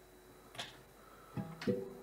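Acoustic guitar being fingerpicked: a soft click about half a second in, then the first plucked notes ringing out from about a second and a half in.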